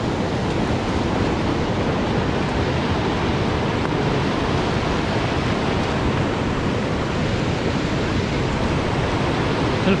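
White-water river rapids rushing steadily, a continuous even noise of churning water.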